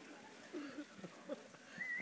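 A quiet pause in a hall full of people: faint murmur with a few soft, scattered voice sounds, and a brief high rising tone near the end.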